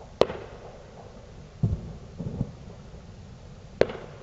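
Fireworks and firecrackers going off: a sharp crack just after the start and another near the end, with duller, deeper booms between them.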